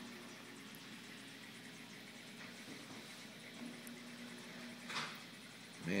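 Faint, steady trickle of water from the aquarium's filter running, with a low hum coming in partway through.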